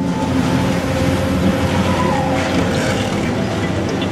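Demolition machinery working on a concrete building: a heavy diesel engine running under a dense, noisy clatter of concrete breaking and rubble falling.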